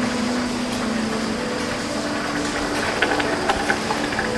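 Steady rushing roar of a metal-casting foundry as molten metal is poured from a glowing crucible into a mould. A few sustained low tones hum underneath.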